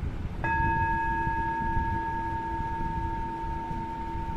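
A singing bowl struck once, about half a second in. Its ringing tone, with several higher overtones, holds on and fades slowly.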